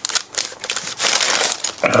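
Clear plastic parts bags full of small building bricks being handled and shuffled, crinkling and rustling with irregular crackles.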